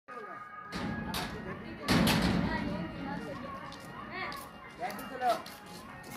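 Voices with music under them, broken by a loud burst of noise about two seconds in.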